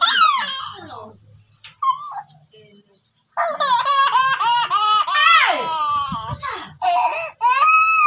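Baby crying: a short cry at the start, then a few seconds of near quiet, then loud, long wailing cries from about halfway through, breaking off briefly before the end.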